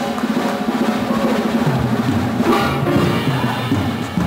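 Lively band music with a drum kit, played for a stage dance number.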